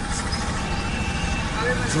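Steady outdoor street noise with a low rumble of traffic, during a pause in a man's speech. A faint steady high tone sounds through the middle, and his voice comes back near the end.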